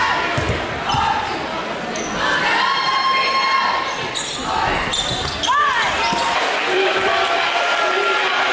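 A basketball bouncing on a hardwood gym floor as a player dribbles at the free-throw line, over the chatter of a crowd in a large echoing gym. A short squeak comes a little past the middle.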